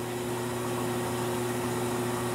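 A belt-driven test rig turning a homemade wind-turbine generator at about 100 RPM, giving a steady, even hum with a faint whir.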